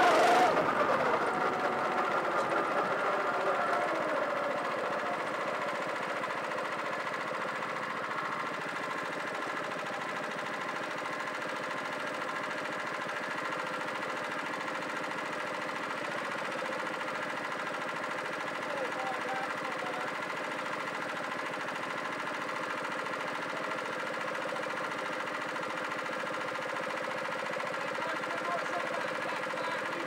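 Honda Pro-kart engine heard on board, loud at the start and falling away over the first four seconds as the kart slows. It then idles steadily while the kart sits stopped.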